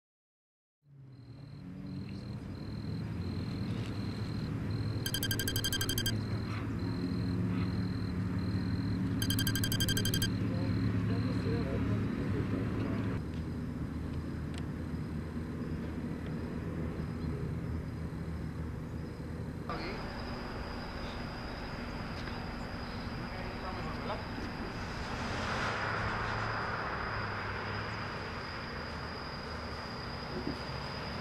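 Outdoor night ambience: a steady low hum with indistinct voices. Two short bursts of rapid electronic beeping come about five and nine seconds in, and a vehicle passes near the end.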